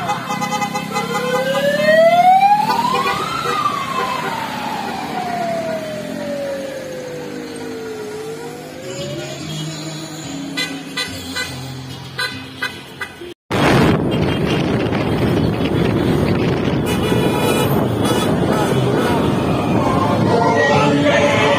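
A vehicle siren wailing: its pitch climbs for about two seconds, falls slowly over the next five, and starts to climb again. After a sudden cut about two-thirds of the way in, a loud steady rushing noise takes over.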